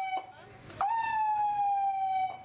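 Police vehicle siren sounding long, steady tones that sag slightly in pitch. One tone dies away just after the start, and a new one cuts in sharply a little under a second in and holds.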